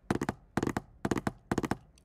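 Keys clacking on a laptop keyboard close to its microphone: four quick bursts of three or four sharp clicks each, spread evenly through the two seconds.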